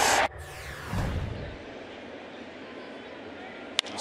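Baseball stadium crowd noise: cheering cut off abruptly, a low thud about a second in, then a steady crowd murmur. Just before the end comes the single sharp crack of a bat hitting the ball.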